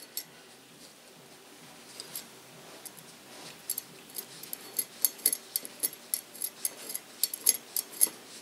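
Small steel M3 screw and nut turned by hand against a metal bracket: light, irregular metallic clicks, sparse at first and coming thick and fast from about halfway through.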